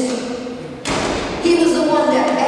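A woman preaching into a handheld microphone, with a single sudden thump a little less than a second in.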